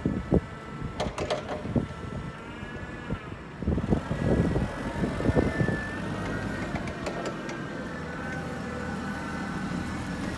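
Jungheinrich TFG 435 LPG forklift running as it is manoeuvred, with a steady engine and drive whine that wavers in pitch. A few sharp knocks in the first two seconds, then a louder burst of clunking and rattling around the middle as it drives off, settling back to a steady running sound.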